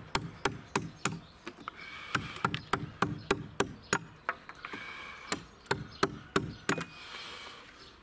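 A mallet striking the wooden handle of a carving chisel as it cuts into a timber beam, in a steady run of sharp knocks about three a second that stops near the end.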